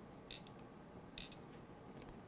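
Near silence with two faint light clicks about a second apart: fingers handling an empty capsule against the ABS plastic plate of a manual capsule filler.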